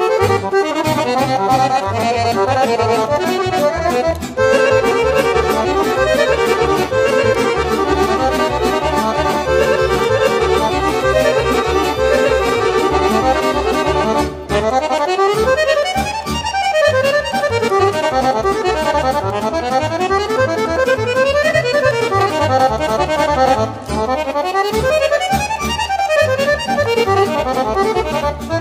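Accordion playing a Bulgarian concert horo, a folk dance tune: quick runs of notes sweeping up and down over a steady bass, with brief breaks about four, fourteen and twenty-four seconds in.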